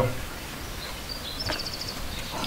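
Outdoor background noise, with a faint high chirp about a second in and a short, rapid high chirping trill about one and a half seconds in.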